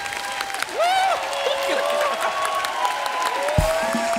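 Studio audience applauding, with long tones sliding up and down over the clapping.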